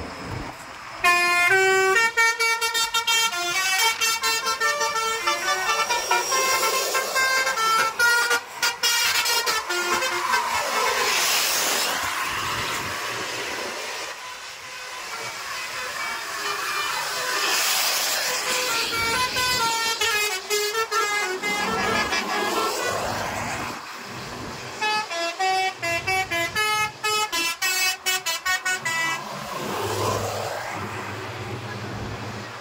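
Telolet horns on tour buses playing quick melodic tunes of stepped horn notes, in two long runs, with the rushing noise of a bus passing close in between.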